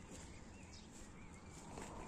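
Quiet outdoor background: a faint low rumble and hiss, with a faint thin warbling chirp near the middle.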